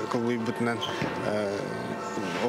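A man speaking in an interview, with faint music underneath.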